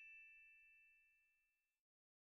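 Faint, high, bell-like chime note from the trailer's closing music, ringing on and fading away, then cutting off to silence near the end.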